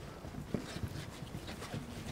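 Boots of a marching color guard on a stage floor: irregular heavy footsteps, a few per second.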